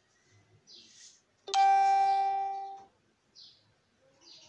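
A single bell-like chime that sets in sharply and rings for about a second and a half as it fades away. Short bird chirps come every second or so around it.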